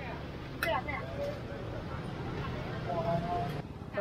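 Short snatches of voices over a steady background hiss, which cuts off abruptly just before the end.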